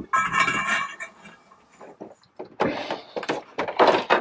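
Steel winch main shaft pushed down into the drum's plastic bushings, giving a short rasping metal-on-plastic squeak in the first second. Then come several short knocks and rustles of handling near the end.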